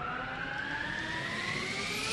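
A synth riser in electronic background music: layered tones gliding steadily upward in pitch as a build-up.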